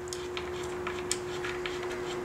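Faint scattered metallic clicks and ticks as a new reverse-light switch with a copper washer is turned by hand into the case of a Mazda Miata five-speed manual transmission, over a steady low hum.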